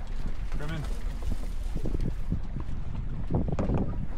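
Wind buffeting the microphone and water rushing past the hulls of a trimaran under sail, with indistinct crew voices now and then.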